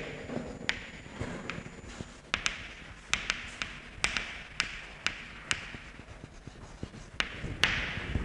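Chalk tapping and scratching on a blackboard as figures are written: a string of irregular sharp taps, a few each second, over a faint hiss.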